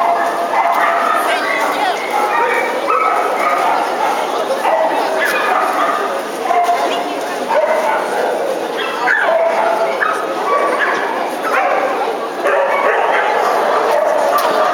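Small papillon dogs barking repeatedly, in short high calls, over a steady din of crowd chatter in a large hall.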